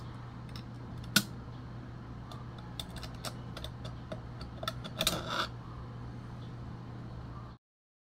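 Diamond file scraping and chipping at corroded coil-spring battery contacts in a camera's battery compartment: scattered small metallic ticks and scrapes over a steady low hum, the sharpest about a second in and a cluster around five seconds.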